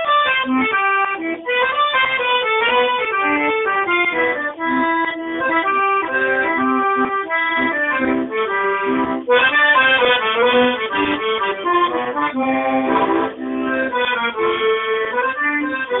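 Piano accordion played solo: a march, its fast-moving melody over lower notes, without a break.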